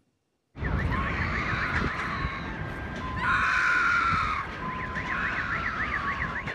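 Several alarm sirens sounding at once over a wash of street noise. It starts suddenly about half a second in, with quick warbling tones rising and falling several times a second. A louder alarm tone joins about three seconds in.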